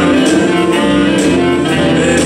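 Two saxophones playing a sustained melody line together, over live band backing of keyboard and cymbal-led drums.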